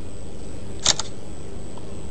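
Smartphone camera shutter sound as a selfie is taken: one quick double click about a second in, over a steady low background hum.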